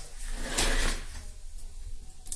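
A click, then a brief scraping rustle of something being handled, lasting about a second.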